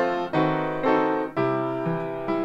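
Upright piano played with both hands: chords struck about twice a second, each ringing on and fading before the next.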